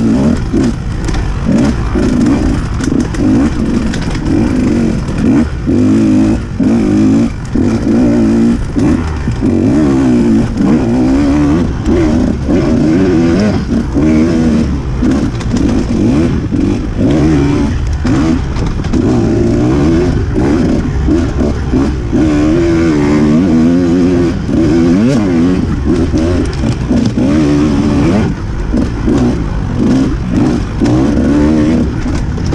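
Off-road dirt bike engine revving hard and constantly rising and falling in pitch as the rider works the throttle along a rough trail, with frequent brief drops where the throttle is shut off.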